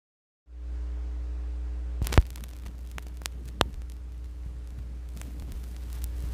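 Vinyl record playback before the music starts: a steady low mains hum from the turntable setup, with sharp clicks of surface noise in the lead-in groove of a 1978 Warner Bros. LP. There is a loud pair of clicks about two seconds in and fainter single ones a second or so later.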